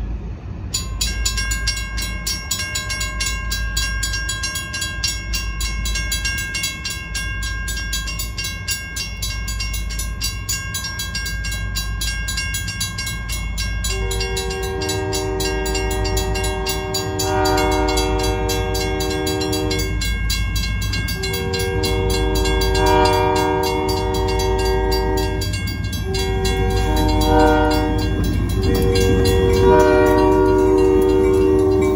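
A grade-crossing bell starts ringing rapidly about a second in. From about halfway, a Huron & Eastern Railway diesel locomotive's chime horn sounds the crossing warning of long, long, short, long, with the last blast still going at the end. A low locomotive rumble underneath grows louder as the train approaches.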